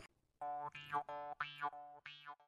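Faint comic sound effect: a quick run of about five short pitched notes, each bending up and down in pitch.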